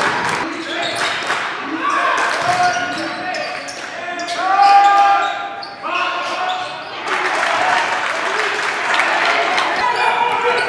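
Live basketball game sound in a gym: a ball bouncing on the hardwood floor, mixed with players' and spectators' voices.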